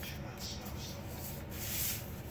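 Fingers rubbing and sliding along a sheet of paper to sharpen a fold, with a longer, louder rub near the end.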